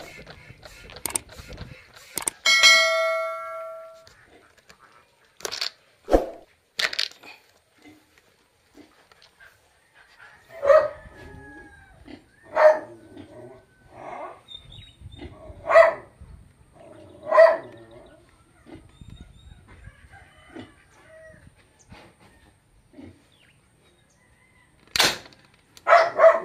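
A dog barking four times, a second or two apart, in the middle. Earlier there is a brief ringing tone and a few sharp clicks, and near the end a single sharp crack.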